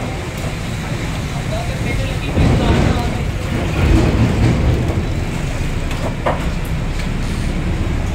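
Street noise: a steady low rumble of passing traffic that swells twice around the middle, with a single sharp knock a little after six seconds.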